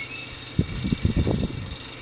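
Campagnolo Athena rear hub spun by hand, its freehub pawls giving a fast, even ticking. The cone has just been backed off, so the bearings now turn freely. A few low handling knocks come about halfway through.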